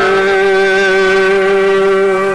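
Male Carnatic vocalist holding one long, steady note at the close of a phrase, over a steady lower drone.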